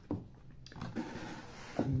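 Handling noise from a magic-trick prop being opened: a sharp click just after the start, then a few light knocks and rustle.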